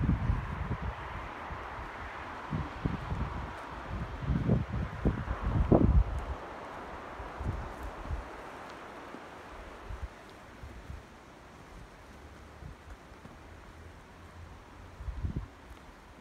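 Wind gusting on the microphone with rustling, strongest in the first six seconds, then dying down to a faint hiss with one more gust near the end.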